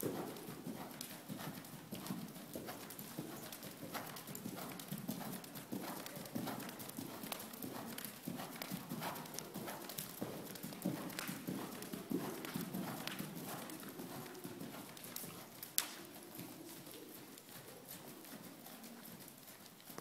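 Hoofbeats of a horse trotting on the soft sand footing of an indoor arena, coming as faint, irregular thuds. There is one sharper click about three-quarters of the way through.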